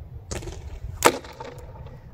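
Single shot from an ASG Urban Sniper spring-powered bolt-action airsoft rifle, upgraded with a new compression system for about 3 joules: a sharp crack about a second in, with a softer noise just before it.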